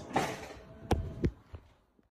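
Two dull thumps about a third of a second apart, then a fainter third, fading out to nothing near the end.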